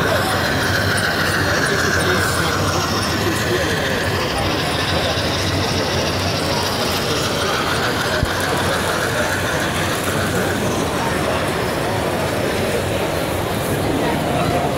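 Bachmann On30 model trains running on the layout's track, a steady mechanical clatter of wheels and geared motors, with crowd chatter from the show hall behind.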